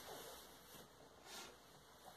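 Near silence: room tone, with one faint soft sound a little past halfway.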